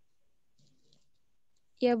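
Near silence over a video call line, with a few faint indistinct noises, then a woman's voice begins a short reply near the end.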